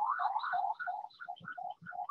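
Street emergency-vehicle siren going by, in a quick rising-and-falling yelp of about three sweeps a second that breaks up into short alternating high and low blips in the second half, picked up through a video-call microphone.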